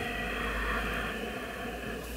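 A long, breathy out-breath, a soft steady rush of air that swells and then fades, over a low steady room hum.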